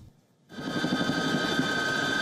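A brief silence, then, from about half a second in, a steady mechanical running sound: a high, even whine over a rough, lower rumble.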